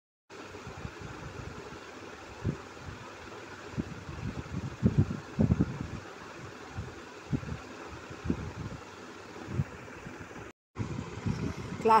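Steady background hiss, like a fan or distant traffic, with scattered low thumps and rumbles, and a brief total dropout shortly before the end.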